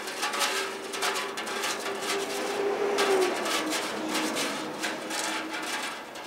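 Drum kit played with bare hands in an experimental way: a dense patter of light finger taps and scrapes on the drumheads and cymbals, with a single held tone running through most of it that wavers about three seconds in.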